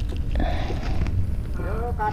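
Wind buffeting the microphone: an uneven low rumble, with a few short voiced sounds near the end.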